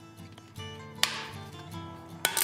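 Background music, and about a second in a single sharp metallic snap that rings briefly: end nippers cutting a rivet's shank to length.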